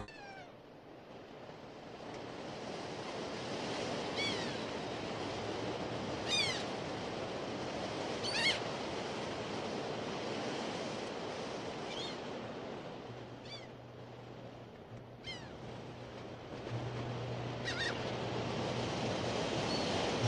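Steady rain falling, with about seven short, high animal calls that fall in pitch, a few seconds apart. A low steady hum comes and goes in the second half.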